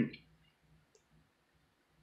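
Faint close-up chewing and wet mouth clicks from eating soft golden dragon fruit flesh, with one sharper click about a second in.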